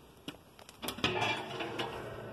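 Heavy steel cook-chamber door of an offset smoker being opened: a few light clicks, then about a second in a metallic clank that rings on, fading slowly.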